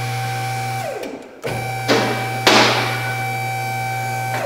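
A two-post vehicle lift's electric hydraulic pump motor running with a steady hum; it stops about a second in, winding down in pitch, then starts again. Two creaking cracks come from the Jeep near the middle, the louder about two and a half seconds in: the suspension relaxing as the body rises off the frame.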